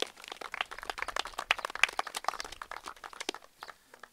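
A small crowd applauding: many quick, irregular claps that die away near the end.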